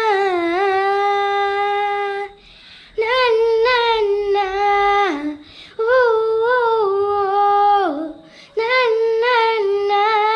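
A boy singing solo with no accompaniment in a high voice, in long held notes. He pauses briefly for breath three times, and the pitch drops away at the ends of the phrases about five and eight seconds in.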